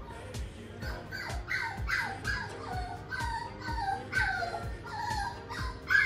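Toy poodle puppy whining while shut in her playpen: a string of short, falling cries, two to three a second, starting about a second in. Background music with a steady beat plays underneath.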